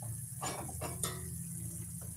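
A cooking utensil scraping and clinking against a stainless steel frying pan as chicken adobo is stirred, with a few quick strokes in the first half and quieter after.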